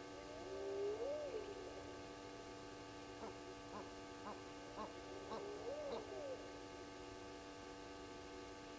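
Spotted hyenas whooping, faint: a long rising whoop about half a second in, a run of short whoops about two a second, and another long whoop near six seconds. A steady electrical hum runs underneath.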